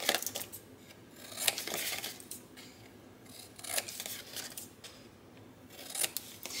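Scissors snipping the corners off a scored sheet of paper: a few short, crisp cuts spaced a second or two apart.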